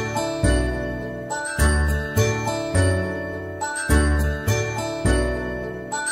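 Instrumental children's cartoon music: bell-like chiming notes over deep bass notes, struck at a steady pace of about two a second.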